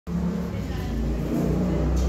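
A steady low rumble.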